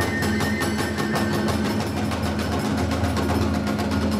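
Iwami kagura hayashi music: drums and small hand cymbals struck in a fast, even rhythm of about six beats a second, with a high, held flute note over them.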